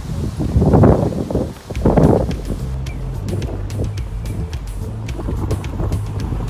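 Strong wind buffeting the microphone, loudest in two gusts near the start, over background music.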